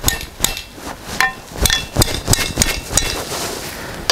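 Steel gusset plate being tapped into the slotted end of a steel pipe brace with the back of a hatchet, used in place of a hammer. It makes a run of sharp metal-on-metal knocks, about three a second, some ringing briefly.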